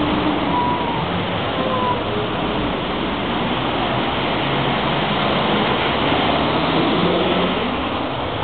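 Steady city street noise: a dense, even hiss of traffic and street bustle.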